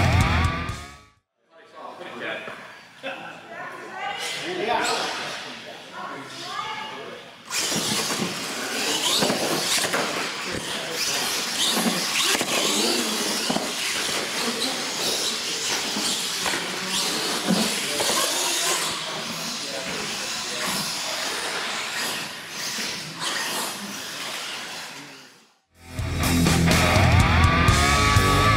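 Radio-controlled monster trucks racing in an indoor hall: a dense, steady mix of motor and tyre noise that starts about a quarter of the way in and cuts off abruptly shortly before the end, with voices in the hall before it. Rock music plays briefly at the start and again near the end.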